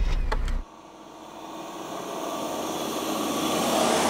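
A low rumble inside the cabin cuts off about half a second in. Then the Daewoo Musso's 2.9-litre turbo-diesel approaches on the road, its engine and tyre noise growing steadily louder as it nears and passes close.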